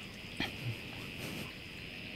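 Steady chirring of crickets, with a sharp click about half a second in and a short low sound just after it.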